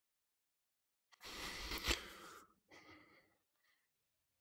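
A person's loud, breathy exhale close to the microphone, lasting about a second and peaking sharply near its end, followed by a shorter, softer second breath.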